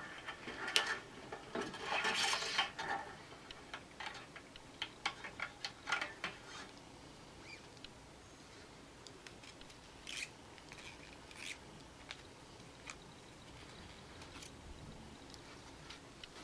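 Faint scratching and small clicks of old acoustic guitar strings being unwound by hand from the tuning posts and coiled up. The sounds come thickly in the first several seconds, then turn sparse.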